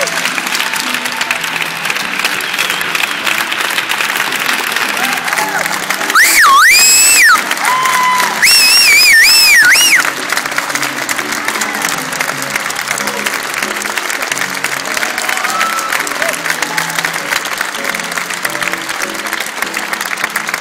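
Audience applauding steadily over music. About six seconds in, and again a moment later, someone close by gives a loud, wavering whistle; these two whistles are the loudest sounds.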